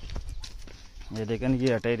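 A man's voice in a drawn-out, wavering vocal sound, starting about a second in, over a low rumble.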